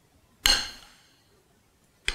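A single clink of a metal spoon against a ceramic soup bowl, about half a second in, ringing briefly before dying away.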